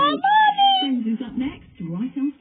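A high, meow-like call that rises and then falls in pitch, lasting under a second. It is followed by a short, quieter, noisy stretch, and speech picks up again near the end.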